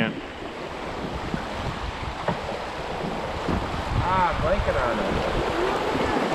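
Steady rush of whitewater as a small, steep river runs fast over rocks around a drifting raft.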